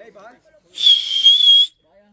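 A referee's whistle blown once: a single high, steady blast of about a second with a slight warble, starting a little under a second in, signalling a yellow card.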